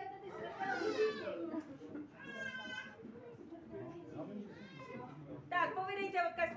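Indistinct voices of a small group of people. About two seconds in there is a drawn-out, high-pitched squeal lasting under a second, with a shorter high gliding cry just before it.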